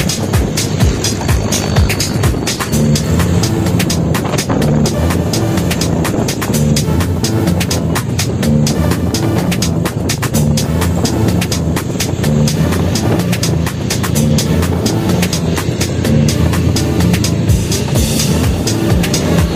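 Background music with a steady beat, laid over the ride.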